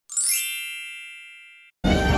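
A bright chime sound effect: a quick upward run of bell-like tones that rings and fades for about a second and a half, then cuts off. Music with violin starts just before the end.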